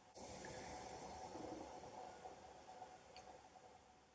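Faint sipping of hot coffee, a soft sound lasting about two seconds that fades away.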